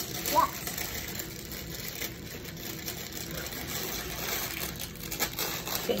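Low room noise with a brief voice sound about half a second in and a few faint clicks later on.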